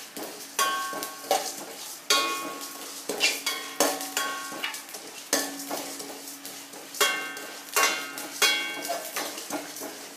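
A metal spoon stirring dry coriander seeds, cumin and dal as they roast in a stainless steel pan, scraping and striking the pan about once a second, with the steel ringing briefly after each stroke and the seeds rattling across the metal.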